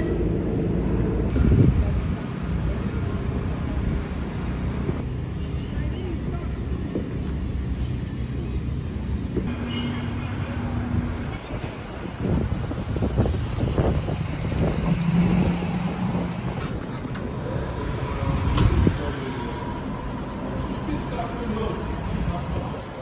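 City street ambience: a steady rumble of traffic with snatches of passers-by talking. The background changes abruptly a few times.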